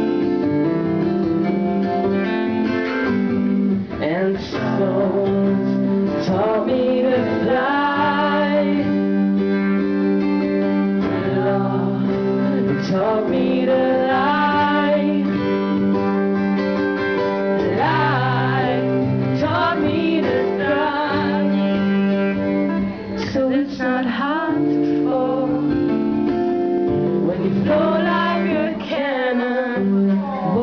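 Acoustic guitar strummed in steady chords, with a man singing over it at the microphone.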